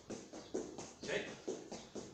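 Quick footsteps of trainers on a padded exercise mat, stepping out, out, in, in in a footwork drill. The steps land in a brisk rhythm of about three a second.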